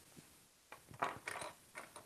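Faint small clicks and rattles of something being handled on a tabletop, bunched together over about a second in the middle.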